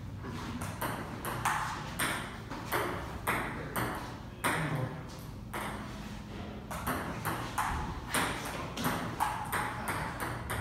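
Table tennis ball in a rally, clicking off the paddles and bouncing on the table about twice a second.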